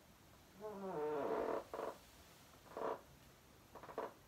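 A man's voice: a long, rough groan falling in pitch, followed by a few short voiced breaths. It is the sound of exasperation.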